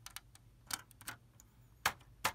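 Lego plastic bricks clicking as a small plate is pressed onto the model: a handful of short, sharp clicks, the loudest near the end.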